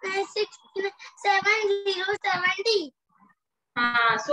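A child's voice chanting numbers in a sing-song counting rhythm, with a short pause near the end before the chanting starts again.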